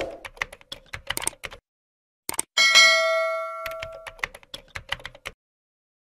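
Animated subscribe end-card sound effects: a thump, then rapid keyboard-typing clicks as text types out. About two and a half seconds in comes a bright bell ding that rings away over about a second and a half, then a further run of typing clicks.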